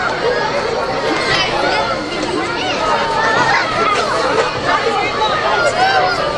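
Spectators chattering: many voices talking over one another at a steady level, with no single voice standing out.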